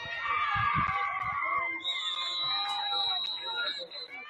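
Football crowd and sideline voices shouting and calling over one another, with no clear words. A high, steady tone holds for about two seconds in the second half.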